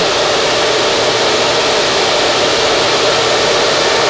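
Loud, steady rushing noise from the cooling fans of many running ASIC bitcoin miners in a mining farm.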